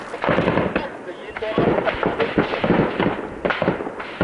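Heavy, irregular small-arms gunfire in a firefight: many overlapping shots, with a brief lull about a second in.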